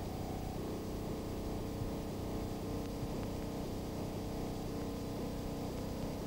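A faint, steady low hum from the film's soundtrack, with a faint, evenly repeating pattern in the low middle range.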